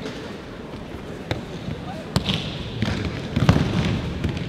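Thuds and slaps of aikido break-falls on tatami mats as partners are thrown: two sharp single impacts, then a quick cluster of heavier thuds near the end.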